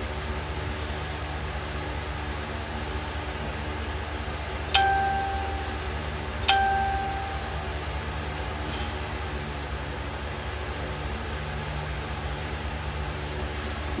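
Two short chime-like dings, about two seconds apart, each striking suddenly and fading within a second, over a steady low hum.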